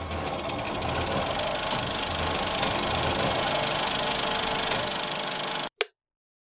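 Transition sound effect: a steady, fast mechanical clatter that cuts off suddenly near the end, followed by one short click.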